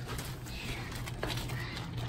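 Outdoor hot tub with its jets running, the water churning over a steady low pump hum, with a couple of faint knocks about halfway through.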